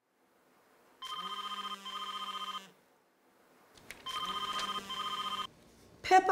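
Telephone ringing twice, each ring about a second and a half long with a short break in the middle.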